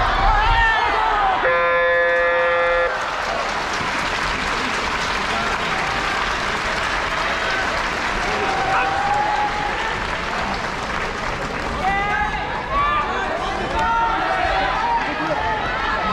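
Shouting, then an electronic buzzer sounding once for about a second, followed by sustained cheering and clapping from the crowd, with men's voices calling out more toward the end.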